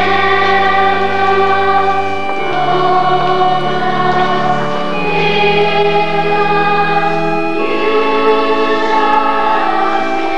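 Church choir singing a slow hymn in long held chords that change every two to three seconds.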